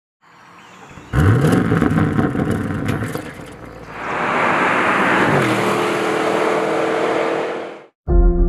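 A car engine revving hard about a second in, its note rising fast with sharp crackles. It is followed by a car passing at speed in a rush of noise, the engine note dropping and settling into a steady drone before the sound cuts off abruptly near the end.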